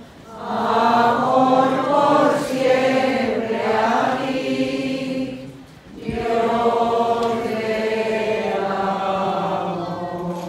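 A crowd of people singing a slow religious hymn together, in two long held phrases with a short break about six seconds in.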